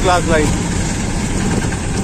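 Auto-rickshaw engine running steadily as a low rumble, heard from inside the cab, with a voice briefly at the start.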